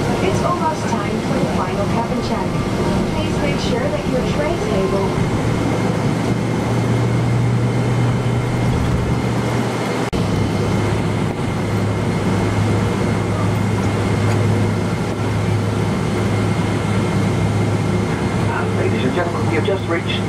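Cabin noise inside a Boeing 777-200 airliner taxiing to the runway: a steady drone of engines and air systems with a low hum that comes in about five seconds in and drops slightly in pitch about halfway. Indistinct voices are heard near the start and near the end.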